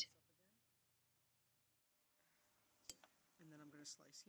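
Near silence: room tone, with a single faint click about three seconds in and a faint voice near the end.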